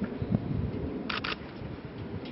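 Single-lens reflex camera shutter firing: a quick pair of sharp clicks about a second in.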